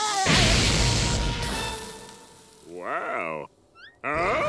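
Cartoon explosion sound effect of a fiery blast: a sudden loud bang with a deep rumble that dies away over about two seconds. Near the end a short cry from a cartoon voice.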